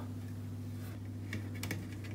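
A steady low hum with a few light clicks and taps about one and a half seconds in, as a spirit level is set against a metal wall-light bracket.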